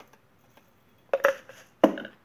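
A pause, then a few sharp clicks and clatters about a second in and a louder knock near the end: a plastic jar of ABS pellets being handled at the injection molding machine's metal hopper as it is filled, then set down on the workbench.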